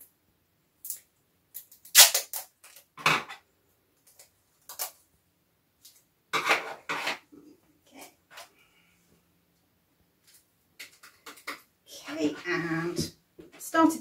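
Crafting handling noises as sticky tape is used to fix elastic bands onto a jar lid: a scattering of separate clicks and crinkles, the loudest about two seconds in. A woman's voice comes in near the end.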